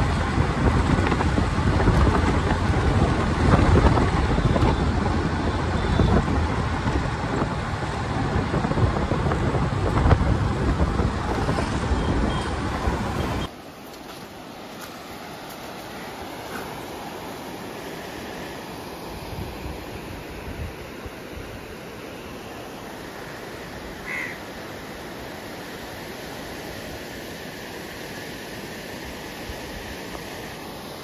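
Wind rush and road noise from riding a motorbike along a highway, loud and rumbling, cutting off suddenly about 13 seconds in. After that comes a quieter, steady rushing hiss of river water spilling over a weir.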